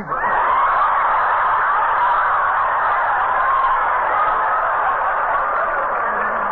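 Studio audience laughing for several seconds at a steady level after a punchline, heard through an old radio broadcast recording with a dull, narrow top end.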